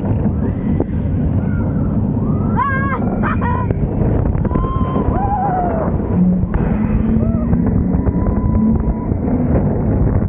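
Roller coaster ride heard from the front seat: steady rushing wind and wheel rumble, with riders whooping and screaming several times. About six seconds in, a low hum joins for a few seconds as the train heads into a steep climb.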